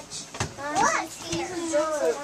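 Children talking in high voices, the words not clear, with a short sharp knock about half a second in.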